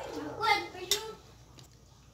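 A brief voice sound in the first second, followed by a short click.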